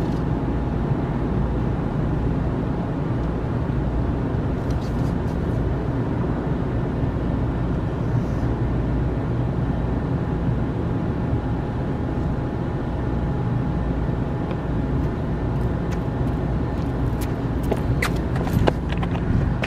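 Steady low outdoor rumble with no words, of the kind heard from traffic and machinery around an open rooftop parking deck, with a few faint light clicks near the end.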